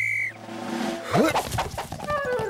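A short, high referee's whistle blast at the start. About a second later comes a quick rising swoop of cartoon sound effects as a Wellington boot is thrown.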